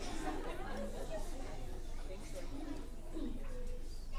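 Many young children's voices chattering and murmuring together, with no single clear speaker.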